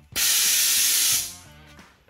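A loud hiss that starts suddenly, holds for about a second and then fades away, over background guitar music.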